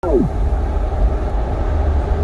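Steady, loud low rumble of a car on the move, heard from inside the cabin at highway speed, with a short falling sweep in pitch right at the start.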